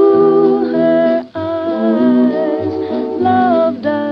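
Vintage 1930s–1940s popular jazz recording playing, with sustained melody notes over chordal band accompaniment. The sound drops out briefly about a second and a half in, then the music resumes.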